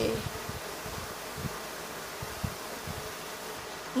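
Steady background hum in a pause between speech, with a few soft low thumps.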